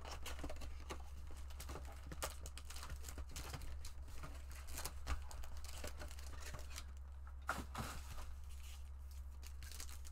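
Plastic wrapping on a box of baseball trading cards being torn and crinkled as the box is opened and its packs handled: a continuous crackle with a few louder clicks about five and seven and a half seconds in. A steady low hum runs underneath.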